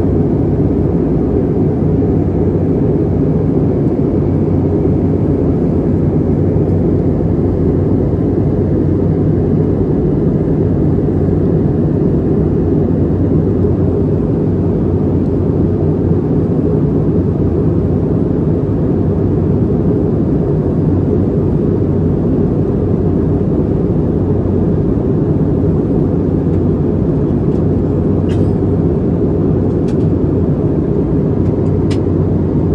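Steady, even roar of engines and airflow inside an Airbus A321neo's cabin at climb power, heard from a window seat over the wing, with most of the sound low and a faint steady hum beneath it.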